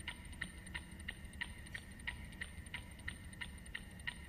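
Faint tension music cue: a soft, pitched tick repeating about three times a second over a thin, steady high tone, like a ticking clock.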